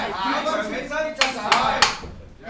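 A shouted voice, then three sharp smacks about a third of a second apart in the second half.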